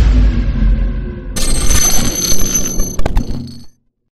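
Logo intro sound effects: a deep boom fading out, then from about a second and a half in a bright, bell-like ringing with a few sharp clicks, cutting off abruptly just before the end.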